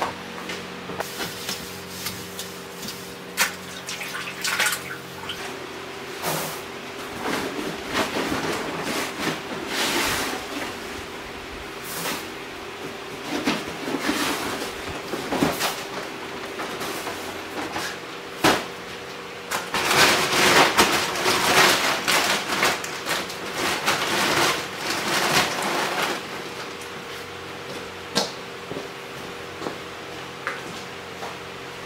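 Scattered sharp knocks of handling work, then about twenty seconds in a long, rushing pour of grain feed from a sack, lasting some six seconds and the loudest thing heard. A steady low hum runs underneath throughout.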